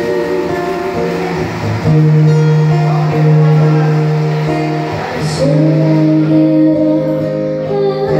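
Acoustic guitar accompanying a female voice singing long held notes in a slow ballad. About five and a half seconds in, the voice slides up into a new sustained note.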